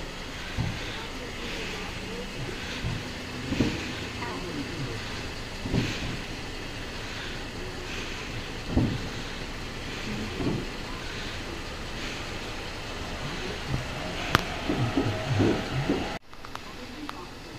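Indistinct voices of people talking, heard now and then over a steady background hum like traffic, with a sharp click about two seconds before the end. No fireworks bangs are heard.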